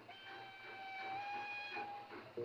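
Steam locomotive whistle blown in one long steady note of nearly two seconds, its pitch stepping up slightly partway through, over a low background rumble.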